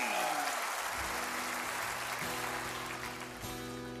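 Studio audience applause dying away as the band's opening chord comes in about a second in and is held steadily.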